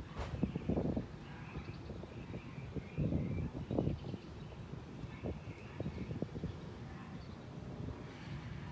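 Outdoor ambience: wind gusting on the microphone in uneven rumbles, loudest about a second in and again around three to four seconds in, with faint bird chirps behind it.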